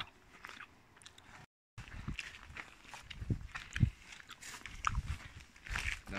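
Footsteps on grass and rough ground mixed with the knocks and rustle of a handheld camera being moved, making irregular crunches and low thumps. The sound drops out to complete silence for a moment about a second and a half in.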